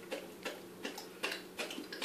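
Newfoundland dog chewing and smacking its mouth on spaghetti, a run of short clicks about three a second.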